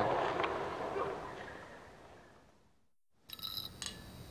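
Skateboard wheels rolling on asphalt, a steady noise that fades out over about three seconds. After a brief silence come a few faint clinks.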